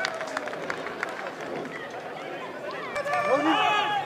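Live pitch sound from an amateur football match: players shouting to one another, with a louder burst of several voices calling out about three seconds in, over scattered short knocks of play.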